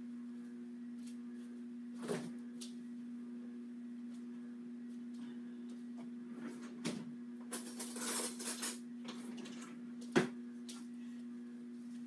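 Small handling sounds over a steady low hum: a few sharp clicks and knocks, and a brief rustle a little past the middle, as a food container and plate are handled.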